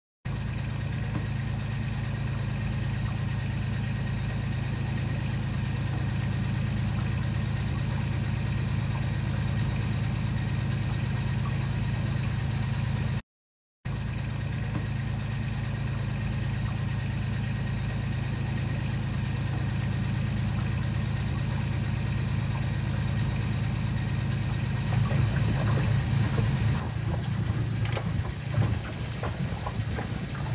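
Boat engine running with a steady low hum, heard from aboard. It drops out briefly about thirteen seconds in, and near the end the sound grows louder and more uneven.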